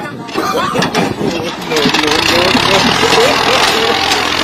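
Massey Ferguson 240 diesel tractor push-started by a group of men, its engine catching and running as a loud, rough steady noise that grows louder about a second and a half in. Men's voices shout over it.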